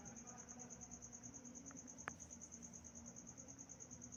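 Near silence with a faint, steady, high-pitched chirping that pulses about ten times a second, over a faint low hum; a single soft click about two seconds in.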